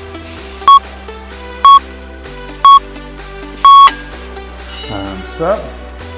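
Interval-timer beeps counting down the end of an exercise set: three short beeps a second apart, then a longer final beep, over electronic background music.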